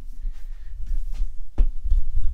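Handling noise from a handheld camera being moved and turned around: a low rumble with a few knocks and bumps, the loudest about one and a half seconds in.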